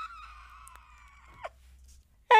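A woman's faint, high-pitched held squeal that trails off, then a brief falling squeak about one and a half seconds in: a pained reaction to the burn of a freshly bitten habanero pepper.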